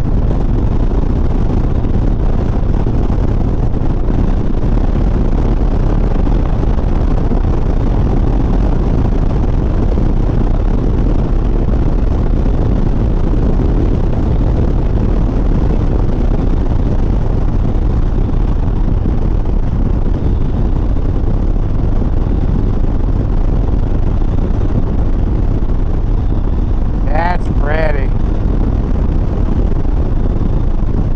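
Harley-Davidson Sport Glide V-twin motorcycle cruising at highway speed, its engine largely buried under steady wind rush on the microphone. Two brief wavering higher-pitched sounds come near the end.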